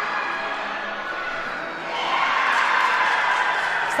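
Teammates and spectators cheering and shouting, getting louder about halfway through.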